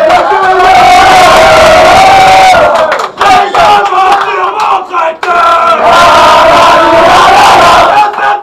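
A group of men chanting and shouting together in a small changing room, with clapping. There is a long held shout, then a choppier stretch about three seconds in, then another long held shout.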